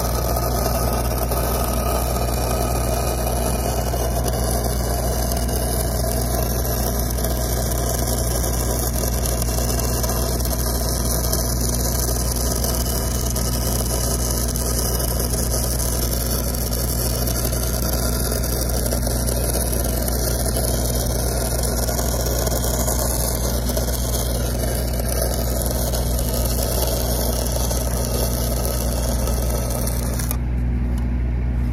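Stick-welding arc crackling steadily as a root bead is run on a pipe joint, over the steady drone of an engine running.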